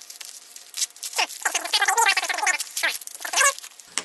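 Padded paper mailer envelope being opened and handled, a dense run of crinkling, scratchy paper-and-bubble-lining rustles as a small item in a plastic bag is slid out.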